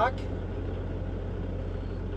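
Semi truck's diesel engine running steadily at low revs, heard inside the cab as the truck reverses slowly.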